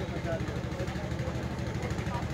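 An engine running steadily, a low hum with a fast, even pulse.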